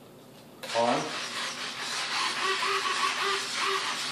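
Servos on an RC foam glider buzzing and whirring about a second in and carrying on, as the receiver's gyro stabilization, switched on at full intensity, keeps driving the control surfaces to correct while the plane is tilted by hand.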